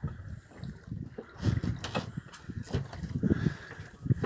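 Water slapping and splashing irregularly against the hull of a small fishing boat at sea, with a few sharp knocks.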